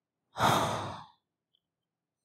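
A man sighing once: a single breathy exhale lasting under a second.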